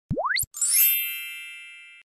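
Subscribe-button animation sound effect: a quick rising swoop, then a bright sparkling chime that rings, fades and cuts off suddenly.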